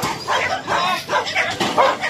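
A pack of many dogs barking and yipping in short, overlapping bursts.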